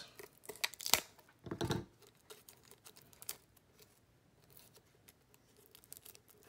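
Plastic shrink wrap being torn and peeled off a tin, crinkling, with two sharper rips about a second and a second and a half in, then fainter crinkles.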